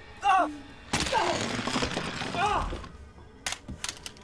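A man's pained cries and gasps over a film score that swells suddenly about a second in. Two sharp clicks near the end.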